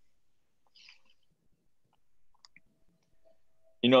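A pause in speech: near silence with a few faint small clicks and a soft hiss, then a man starts speaking just before the end.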